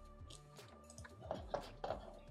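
Chewing a dry whole wheat cracker: several faint crunches, over quiet background music.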